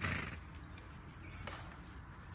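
Horse trotting on arena sand, with one short loud snort at the very start and a fainter sharp sound about a second and a half in.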